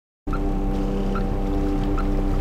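Boat engine idling, a steady hum over a low rumble, cutting in abruptly a moment after the start.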